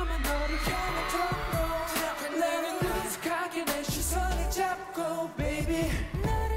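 K-pop dance track from a male idol group, with sung vocals over an electronic backing and a deep bass that drops out briefly a few times.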